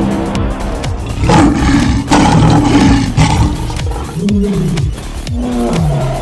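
Lion roars and growls over steady background music, the loudest roars starting about a second in and lasting roughly two seconds, followed by shorter growls that rise and fall in pitch.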